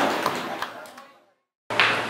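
Voice and room echo fading out into complete silence, then an abrupt cut back in to room noise with a voice, about one and a half seconds in.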